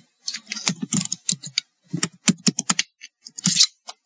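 Typing on a computer keyboard: quick, irregular runs of key clicks with short pauses between them, as a username and then a password are keyed in.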